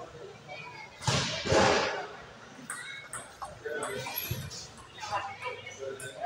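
Indistinct talk from people around a table tennis table, with a loud, noisy burst lasting about a second, about a second in.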